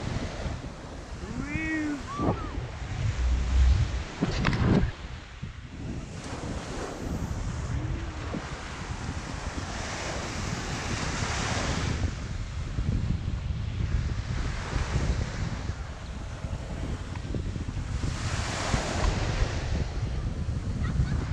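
Small surf breaking and washing up a sandy beach, swelling louder now and then, with wind buffeting the microphone.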